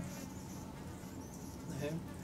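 Faint buzzing of insects.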